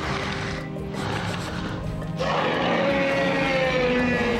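Animated Tyrannosaurus (sharptooth) roaring: one long, loud roar that starts about halfway through and slowly falls in pitch, over background music. A short burst of noise comes right at the start.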